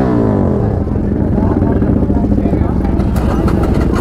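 Large motorcycle engine idling with a deep rumble, its revs falling back in the first half second, with crowd chatter over it.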